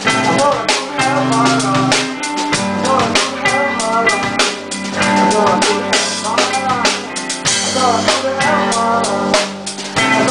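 Live rock band playing at full volume: drum kit beating a steady rhythm of kick and snare under electric guitars and bass guitar, with bending melodic lines on top.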